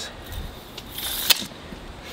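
Steel tape measure retracting into its case about a second in: a short rattling whir ending in a sharp snap.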